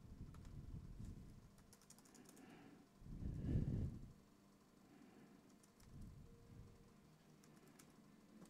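Faint, quick clicking like typing on a keyboard, in short clusters. Low rumbles rise and fall under it, the loudest swelling for about a second about three seconds in.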